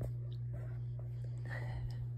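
A steady low hum with faint soft mouth sounds and a brief, quiet breathy vocal sound a little after the middle, as a baby takes a spoonful of baby cereal.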